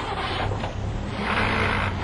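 Renault 5 engine running steadily as it tows a caravan, a low hum under a rushing noise that grows louder in the second second.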